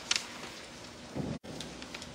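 Light rustling and scattered soft clicks over a steady room hiss, with a short low sound just past halfway and a brief cut-out of all sound right after it.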